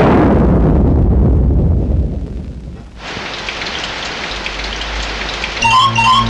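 A thunderclap that breaks suddenly and rumbles away over about three seconds, followed by the steady hiss of rain. A music intro with plucked notes comes in near the end.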